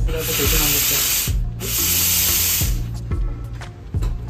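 Steam hissing from a Casadio espresso machine's boiler outlet in two loud bursts, the first about a second and a half long, then a short break and a second of about a second. The boiler is back up to pressure with its new heating element.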